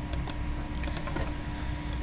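A few faint, short clicks from working a computer, over a steady low electrical hum.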